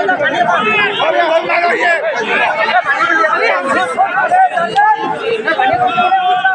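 Spectators' voices: several people chattering and calling out at once, overlapping without a break.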